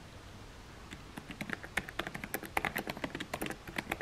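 Fingers typing on a laptop keyboard: a quick, irregular run of light key clicks that starts about a second in.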